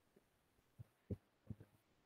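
Keyboard keystrokes, muffled and low, in near silence: four or five soft thumps in the second half, the loudest about a second in.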